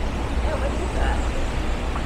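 Steady low rumble of outdoor background noise, with faint distant voices.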